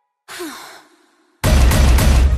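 A short, breathy female sigh in a break of silence in an electronic pop song, followed about one and a half seconds in by the full track coming back in loud, with heavy bass and drums.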